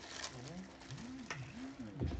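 A pigeon cooing: a series of about four low, smooth rising-and-falling coos. A single sharp click about a second and a half in.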